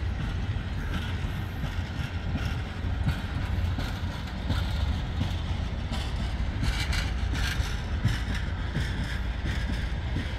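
A passenger train's cars rolling slowly past on the rails: a steady low rumble of wheels on track, with scattered clicks and rattles that thicken around the seventh second.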